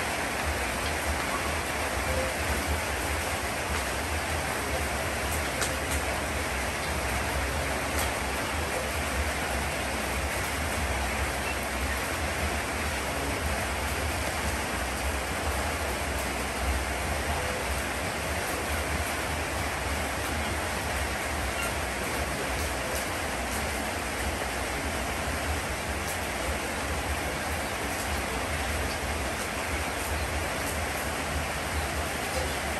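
Steady rain falling, an even unbroken hiss with a low rumble underneath.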